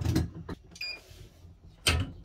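Heat press with a pull-out drawer being loaded and shut to pre-press a shirt: a knock at the start, a short sliding rattle about a second in, and a loud clunk near the end as the press closes down onto the shirt.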